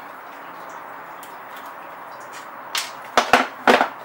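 Grundfos UP-15 circulator pump being pulled apart by hand, its motor and impeller section coming off the pump housing: about four sharp knocks and clunks in the last second and a half, after a stretch of faint background hiss.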